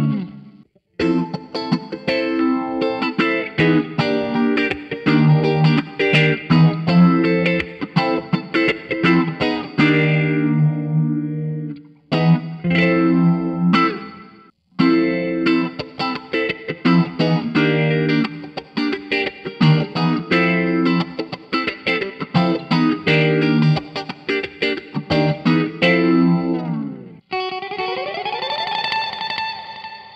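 Electric guitar with Waaah Suhr V70-copy pickups in the neck and middle positions, played through a phaser: strummed chords in phrases, broken by a few short pauses. Near the end a different held chord comes in with a rising pitch sweep.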